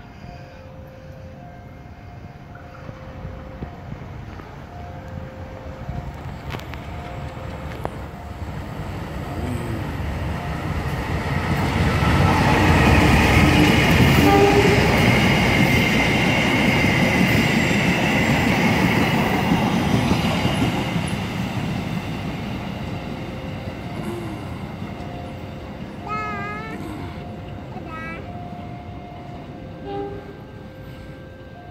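Passenger train hauled by a diesel locomotive approaching and passing close by: the rumble and wheel noise build from about eight seconds in, are loudest as the coaches go past, then fade as it runs away. A faint repeating tone sounds in the background before and after the pass.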